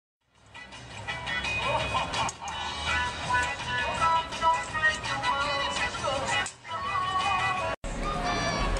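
Music with moving melody lines, fading in over the first second and cut off abruptly just before the end.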